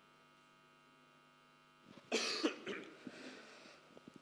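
A short cough about two seconds in, after a stretch of near silence under a faint steady electrical hum.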